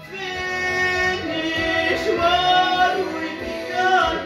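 A man's voice singing a musical-theatre song in long, held notes that step from pitch to pitch.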